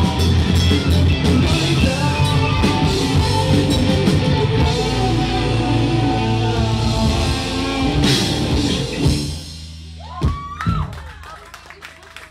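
Live rock band playing loud, with electric guitars, bass, a drum kit and a singing voice. About nine seconds in, the song stops on a final hit and the sound drops away, with a short swooping tone that rises and falls as it rings out.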